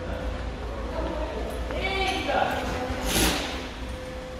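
Ford Ranger 3.2 five-cylinder diesel idling with a steady low rumble, under indistinct men's voices. The engine is pushing oil and heavy smoke out of its exhaust, which the mechanic suspects is a failed turbo or broken piston rings.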